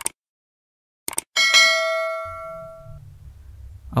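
Subscribe-button sound effect: a short mouse click, another click about a second in, then a bright bell ding that rings out and fades over about a second and a half.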